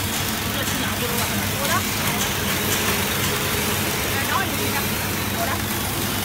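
Stainless-steel bowl-cutter vegetable chopper running steadily: a constant motor hum with the spinning bowl and blades churning finely chopped vegetables.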